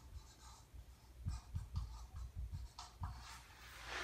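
Dry-erase marker writing on a whiteboard: a series of short, faint strokes as a word is written out.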